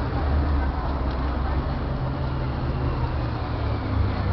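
Steady low engine rumble of a vehicle running close by, with a noisy outdoor background.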